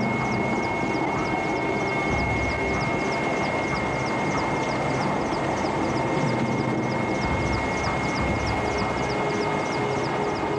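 Aircraft engine droning steadily, with a high steady whine and a fast, even pulsing.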